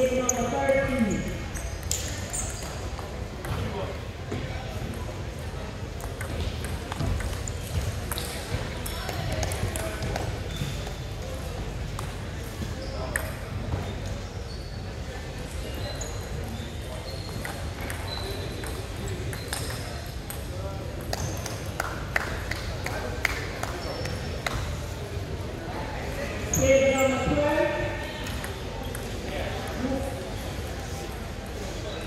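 Table tennis balls being hit on bats and bouncing on tables in a large hall: sharp clicks at irregular intervals, over a background murmur of voices. A nearer voice rises briefly near the end.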